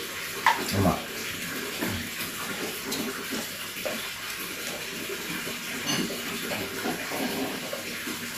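A steady hiss with a few faint clinks of dishes and brief low voices of people eating a shared meal.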